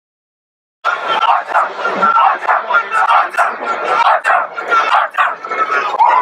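Silence for nearly a second, then a crowd of many voices shouting and cheering loudly at once.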